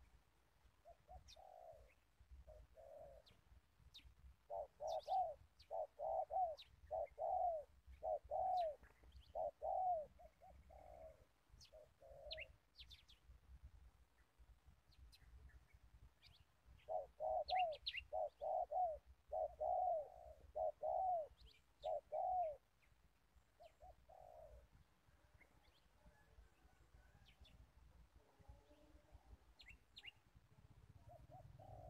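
A dove cooing in two runs of quick, evenly repeated coos, about two a second, with a pause between the runs. Other small birds chirp faintly and briefly throughout.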